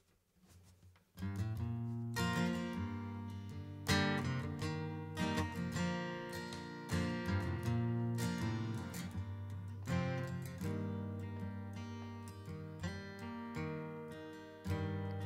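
Acoustic guitar strumming chords in a steady rhythm as a song's introduction, starting faintly and coming in full about a second in.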